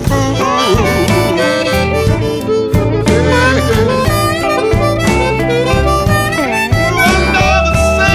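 Blues harmonica solo with bent, gliding notes over a band backing with a steady bass line and drum beat.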